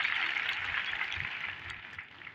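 Crowd applauding, the clapping fading away over about two seconds.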